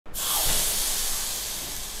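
A hot metal spatula searing the sugared top of an apple, hissing sharply as soon as it touches and slowly dying away.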